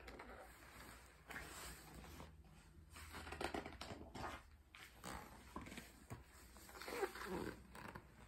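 Faint, irregular rustling and handling noises as a hardcover picture book is moved and its pages are turned, loudest about seven seconds in.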